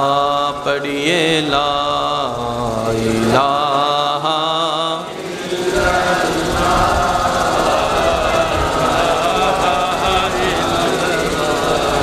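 A man chanting durood (salawat on the Prophet) in long, melismatic held notes for about the first five seconds. A blurrier, fuller chanting carries on after that.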